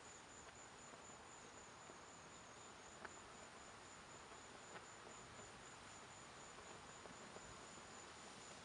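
Near silence with a faint, steady insect trill: a high chirp pulsing evenly a few times a second. Two faint clicks come near the middle.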